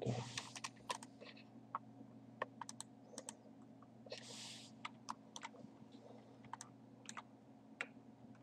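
Faint, irregular clicks of a computer keyboard and mouse being worked, over a steady low electrical hum, with a short hiss a little past the middle.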